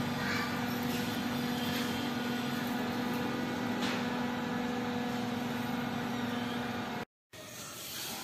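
A steady mechanical hum with a constant low tone over even background noise. It cuts off suddenly about seven seconds in.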